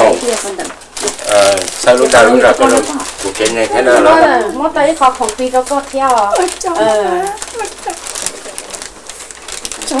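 Speech: people talking in Hmong, higher-pitched voices whose pitch rises and falls.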